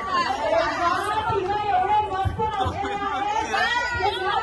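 Overlapping chatter of several voices talking at once, with two low thumps a little past halfway.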